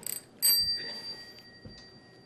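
A small bell struck twice, a light ding and then a louder one about half a second in, whose high, clear ring fades away over about a second and a half.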